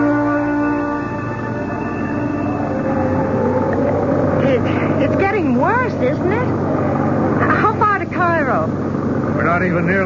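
Radio-drama sound effects: a musical bridge chord ends about a second in. A jeep engine's steady drone follows, under rising and falling whistling glides of wind from an approaching desert sandstorm (simoom).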